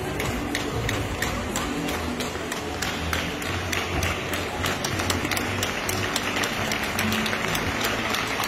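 Music over the arena's sound system, with steady crowd noise and scattered hand clapping throughout.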